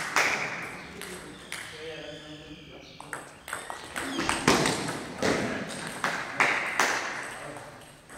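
A table tennis rally: the ball clicks off the bats and the table in a quick, irregular run of hits that starts about three seconds in and lasts about four seconds. Before the rally, faint voices carry in the hall.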